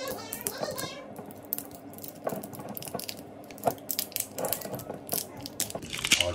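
Foil capsule on the top of a liquor bottle being peeled and twisted off by hand: an irregular run of small crinkles, crackles and clicks.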